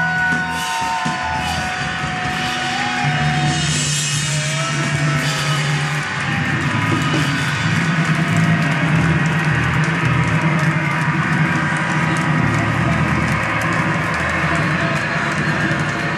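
Live rock band playing loudly: electric guitar with bending, gliding notes over sustained bass, and a drum kit. The drumming grows busier about six seconds in.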